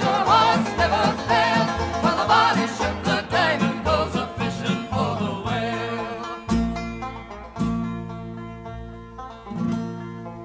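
Instrumental break in a folk trio's recording of a sea-shanty song: plucked strings over a bass line that steps from note to note. About six and a half seconds in it settles into long held chords that slowly fade.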